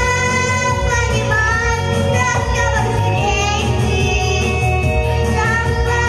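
A young girl singing a song into a microphone over instrumental accompaniment, holding long notes that waver in pitch.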